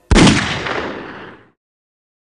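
A single loud gunshot: one sharp crack about a tenth of a second in, with a booming tail that fades over about a second and a half before it cuts off.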